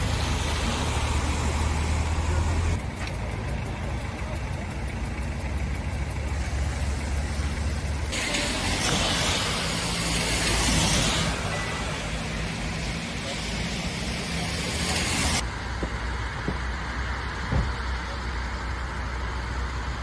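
Road traffic on wet asphalt: cars passing with a hiss of wet tyres over a steady low engine rumble. The hiss changes abruptly in level and brightness a few times.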